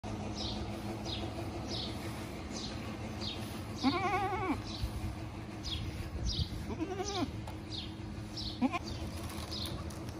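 Goat kid bleating three times with a quavering pitch: a long bleat about four seconds in, another about three seconds later, then a short one. A high chirp repeats steadily throughout.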